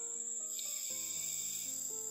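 Background film score of slow, held synthesizer chords, with a steady high-pitched whine running under it. A soft hiss swells about half a second in and fades near the end.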